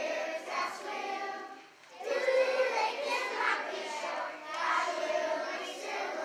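A children's choir singing together without accompaniment, in phrases with a short breath break about two seconds in.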